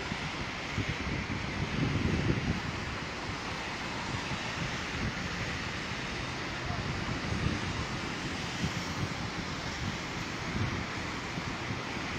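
Steady outdoor noise of wind across the microphone and surf breaking on the beach.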